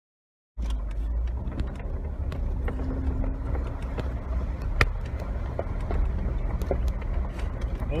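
Jeep Wrangler JK Rubicon driving along a gravel road, heard from inside the cab: a steady low rumble with scattered knocks and rattles from the bumps, and one sharp knock about five seconds in. The sound cuts in suddenly about half a second in.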